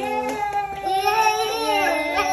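Singing in a high, child-like voice, holding long notes that slide slowly up and down, with more than one pitched part sounding at once.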